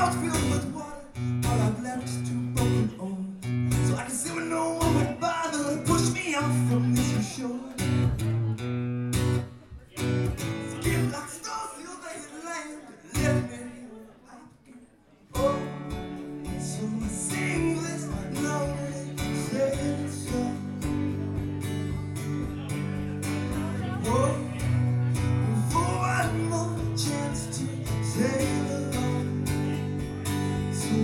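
Acoustic guitar strummed live with a man singing over it. About halfway through, the playing thins out and nearly stops, then the full strumming comes back in.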